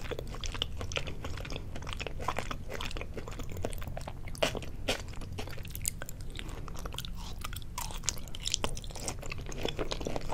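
Close-miked chewing of soft, soy-sauce-marinated raw salmon sashimi: irregular wet mouth clicks and smacks, with a fresh bite about six seconds in.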